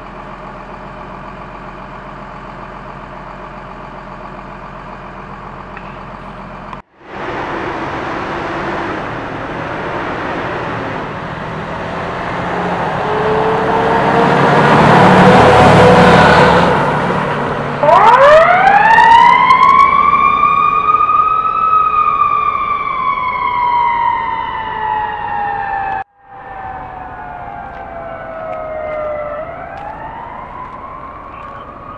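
Fire engines running at the roadside, then a fire engine passes close, its engine and tyre noise building to a peak. About eighteen seconds in its siren starts, a wail that rises quickly and then falls slowly, and near the end it winds up again.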